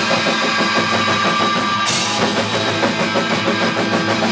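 Rock band playing live, with electric guitar and a drum kit driving a steady beat; a crash cymbal is struck about two seconds in.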